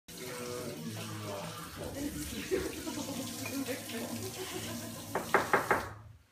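Coffee being slurped loudly off cupping spoons, the hard aspirated slurp tasters use to spray coffee across the palate. A quick run of four short, loud slurps comes near the end, over a low murmur of voices.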